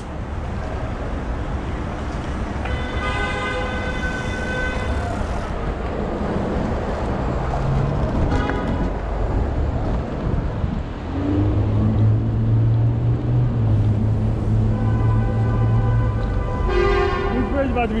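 City road traffic and wind rushing over the microphone of a moving bicycle. A long, steady car horn sounds about three seconds in and again near the end, with a low engine hum in between.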